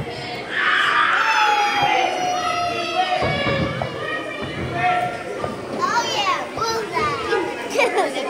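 Children shouting and squealing at play in a gymnasium, with one long high shout falling in pitch from about half a second in, and basketballs thudding on the floor.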